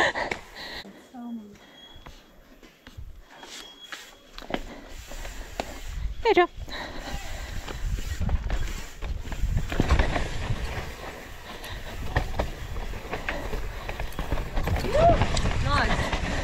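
Mountain bike descending a dirt downhill track, heard from the rider's own camera: tyre rumble, chain and suspension rattle and wind on the microphone. It is quieter for the first few seconds, then a steady rumble for the rest.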